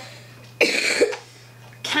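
A person coughs once, a short double cough about half a second in.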